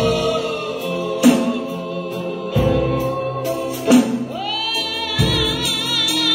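Gospel song sung by a group of voices with instrumental accompaniment over a sustained bass, with a beat falling about every second and a quarter.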